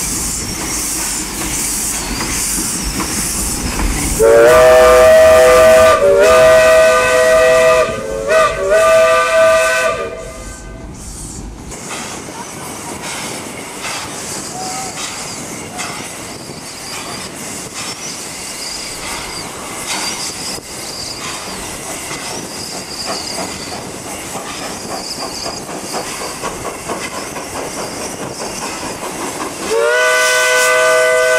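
Vintage steam locomotive sounding its steam whistle: a chord of several tones that slides up at the start, blown in four blasts of falling length for about six seconds, beginning about four seconds in. Afterwards the engine runs on more quietly, with a steady hiss and rattle, until the whistle starts again at the very end.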